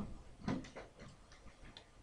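A brief soft sound about half a second in, then a few faint, irregular clicks and ticks in a quiet room.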